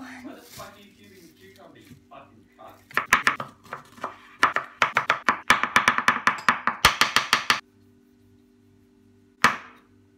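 Chef's knife chopping a cucumber on a wooden cutting board: a fast run of sharp knocks for about four and a half seconds, then a single knock near the end.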